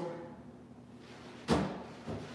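Snowboard balance-training board jumped onto a trainer rail, landing with one sharp knock about one and a half seconds in that rings on briefly.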